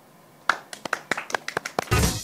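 A quick, uneven run of sharp hand claps, about ten over a second and a half after a quiet start, with a low thud near the end.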